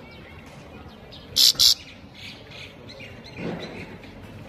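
Caged goldfinch giving two sharp, loud high calls in quick succession about a second and a half in, with faint short twittering notes around them. A soft low thump comes near the end.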